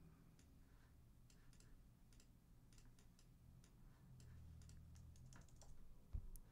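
Faint, irregular clicks of a computer keyboard and mouse being worked, over a low steady hum.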